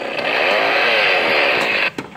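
Loud buzzing, engine-like sound effect from a Halloween animatronic prop, like a chainsaw revving up and back down, played through the prop's small speaker. It cuts off abruptly after about two seconds.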